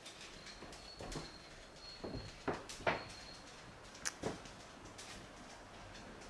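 Irregular footsteps and light knocks on a timber floor, about six in all, with a faint high steady whine that stops about three seconds in.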